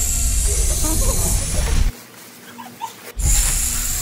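Foil letter balloons being blown up by mouth: long breathy hissing blows through the balloon valves, the first lasting almost two seconds and a second one starting about three seconds in.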